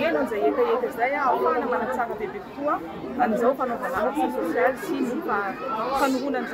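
Continuous speech with the chatter of a crowd around it.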